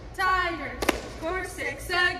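A woman's voice chanting a cheerleading cheer in short shouted phrases, with one sharp hand clap a little before the middle.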